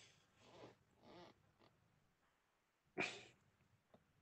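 A few short, faint voice-like calls in the first second and a half, then a sharper, louder one about three seconds in that dies away quickly.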